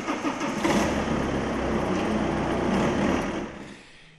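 Car engine, a Fiat Stilo hatchback, idling steadily, then fading out near the end.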